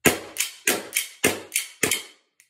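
Lancer Tactical Knightshade green-gas blowback airsoft pistol firing about seven shots in quick succession, roughly three to four a second, each a sharp, loud crack.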